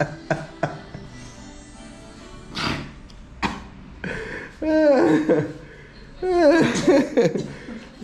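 A voice making drawn-out sounds without words, in two long stretches with sliding, mostly falling pitch in the second half. A few sharp clicks come near the start.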